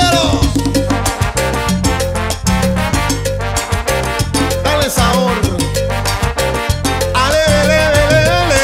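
Cuban timba (salsa) band recording playing a dense, rhythmic groove over a strong bass line. A sliding melody line comes in near the end.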